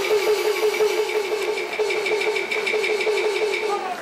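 Live band opening a song with a pitched note pulsing rapidly and evenly, about six times a second, with a faint tick on each pulse; the pulsing stops near the end.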